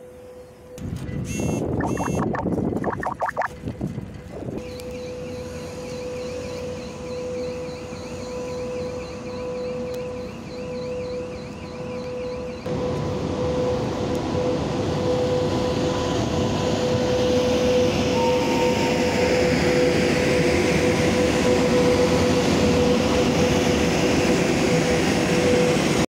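Train rolling past on the track, its wheel-on-rail noise building louder through the second half as an electric locomotive passes close by, with a steady high whine throughout.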